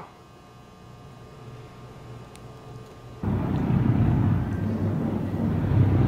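A low, faint hum, then about three seconds in a loud, steady rush of water starts suddenly: a large whirlpool of water swirling down through a round opening in a floor.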